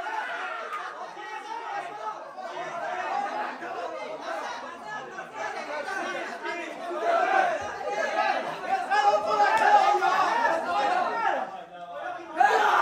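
Football players talking and shouting over one another in a dressing room, a dense chatter of men's voices that grows louder in the second half, with a brief hush right at the end.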